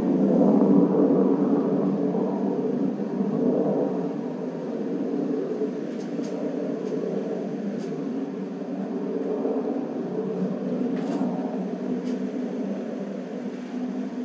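New Shepard's BE-3 rocket engine heard from the ground as a steady distant rumble, slowly fading as the rocket climbs away.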